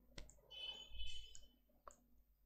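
Two faint computer mouse clicks about a second and a half apart, the press and release of a drag, with fainter small sounds between them.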